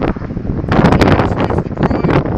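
Wind buffeting the microphone in loud, rough gusts, strongest about a second in.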